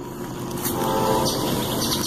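A train running nearby, a steady rumbling noise that is called annoying. A bird chirps in a quick run of high notes near the end.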